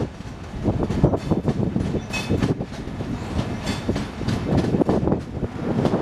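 Passenger train coaches rolling past, their wheels clattering over rail joints and points in an uneven run of clicks and knocks over a steady rumble. A brief wheel squeal comes about two seconds in.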